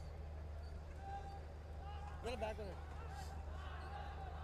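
Cricket stadium ambience: a steady low hum under faint, scattered distant voices from the crowd, with a short burst of voices about two seconds in.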